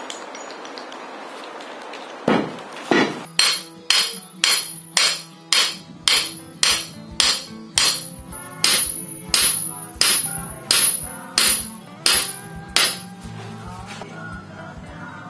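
Hammer driving a steel form stake into the ground: about twenty evenly spaced metal-on-metal strikes, roughly two a second, each with a short high ring. The hammering starts about two seconds in and stops near the end.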